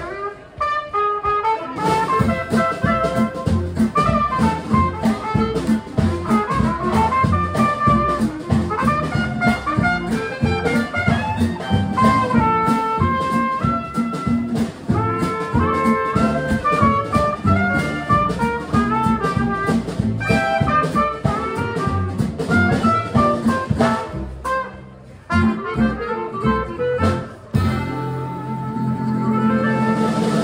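Live small-band jazz: clarinet and trumpet playing melodic lines over acoustic guitar, upright bass and drum kit keeping a steady beat. The band thins out briefly a few seconds before the end.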